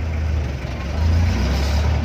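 A jeepney's diesel engine running, heard from inside the open-sided cabin as a steady low drone that swells about a second in, under a haze of traffic noise.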